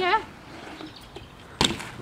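A BMX bike's tyres and frame hitting the concrete of a skatepark bowl: one sharp knock about one and a half seconds in.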